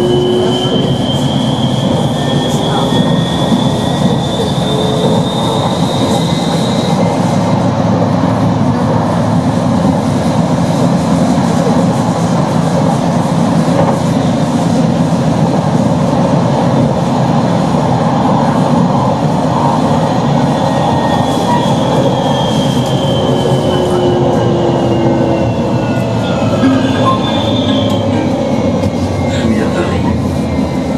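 Tram running along its track, heard from the driver's cab: a steady rolling rumble of wheels on rail. Over it is a thin electric motor whine that rises in pitch over the first several seconds, as the tram picks up speed, and falls again about two-thirds of the way through.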